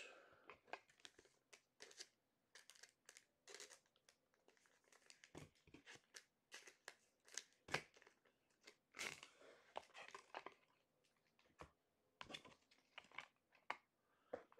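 Faint, intermittent crinkling and tearing of trading-card packaging as a box of card packs is opened by hand: short scattered crackles with brief pauses.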